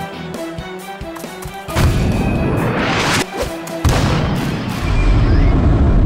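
Animated sound effects for a powerful football shot over background music: a sudden heavy hit about two seconds in, a rising whoosh, and a second hit about four seconds in. A deep rumble follows as the ball flies.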